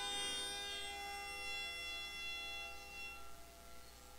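Hammered dulcimer: a final chord struck at the start, its many strings ringing on together and fading away over about three seconds.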